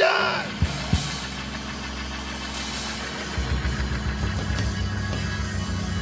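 Live church music: a held keyboard chord with a couple of low hits about a second in, then a low pulsing bass and drum beat that comes in about three seconds in.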